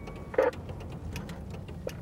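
Engine and road noise heard from inside a moving police car, a steady low rumble, with a faint run of small clicks. A single short blip of sound cuts in about half a second in.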